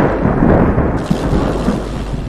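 Thunder-like rumbling sound effect under a title animation: a continuous low rumbling noise that slowly fades.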